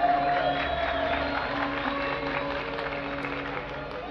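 Orchestra holding long sustained notes between the singer's phrases in an Arabic mawwal, with audience applause and cheering over it, fading toward the end.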